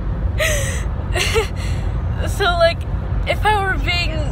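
A woman laughing hard: breathy gasping bursts early on, then high, wavering laughs in the second half. Under it runs the steady low rumble of road noise in a moving car's cabin.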